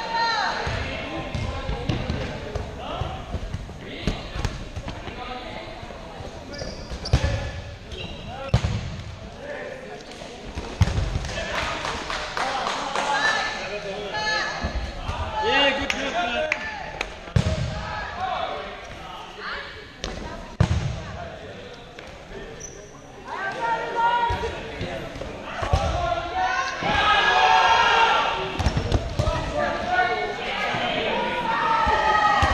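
Dodgeballs thrown during play, hitting players, the floor and the walls with sharp thuds scattered irregularly, echoing in a gymnasium, over players' shouts that grow loudest near the end.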